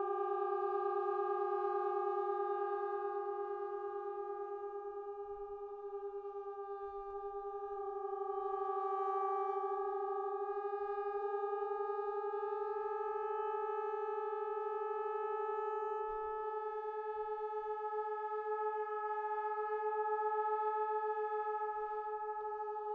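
Three multi-tracked trombone parts holding slow sustained chords. The held notes move in small steps every few seconds and drift gradually upward, with a slight waver in the lowest voice.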